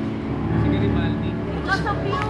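The band's last held notes fade out, then people's voices over a low, steady rumble.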